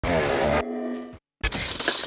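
A short logo sting: music with a crash effect, ending in a held chord that fades out about a second in. After a brief silence, a noisy rustle begins.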